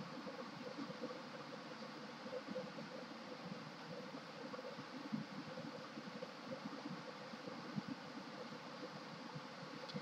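Faint steady background hiss of room tone, with a steady faint hum and a few soft, scattered ticks and rustles.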